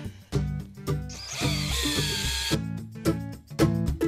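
Hand-held power drill boring through thick steel plate with a twist bit under heavy pressure. For about a second and a half, a noisy, wavering high whine from the bit cutting, over background music.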